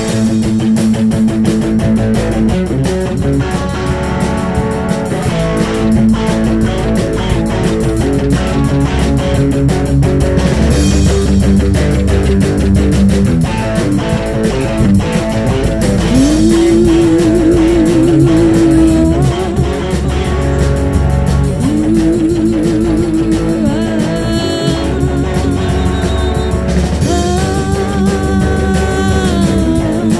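Live rock band playing an instrumental passage with drums, bass and electric guitar. Midway through, and again a few seconds later, a lead line holds long notes that waver in pitch.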